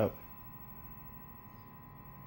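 Faint steady hum with a few thin high steady tones from a freshly switched-on Sony Trinitron CRT television warming up, its screen still dark. The set sounds normal, with no pops or crackles.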